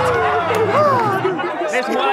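Several people's voices overlapping in drawn-out, wordless calls that slide up and down in pitch, with a low buzz underneath for about the first second.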